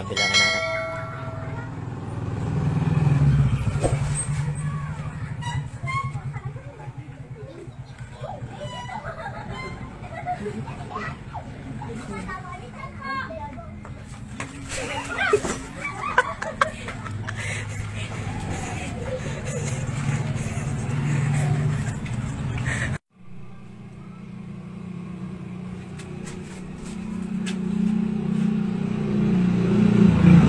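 A motor vehicle engine running steadily, with people talking over it. The sound drops out for a moment about two-thirds of the way through, then the engine comes back louder near the end.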